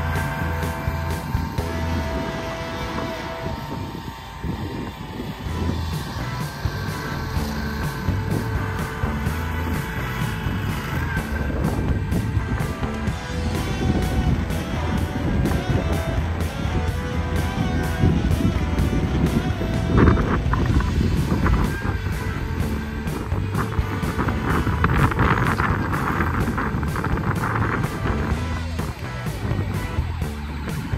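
Background music with a steady beat, with a mini snowcat's engine running beneath it.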